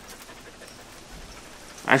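Faint steady hiss of background noise with no distinct events; a man's voice starts near the end.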